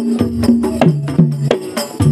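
Live Dolalak dance music: drums and other percussion strike a quick rhythm over a held low note that steps down in pitch about halfway through.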